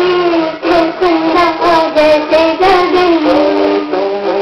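A high female voice singing a Hindi song melody over musical accompaniment, ending on a long held note.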